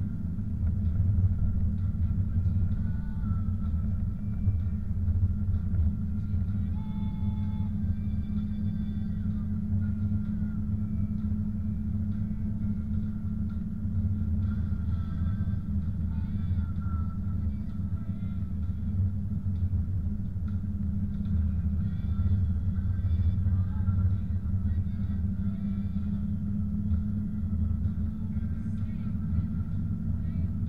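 Steady low rumble of a car's engine and tyres on a snow-packed road, heard from inside the cabin while driving.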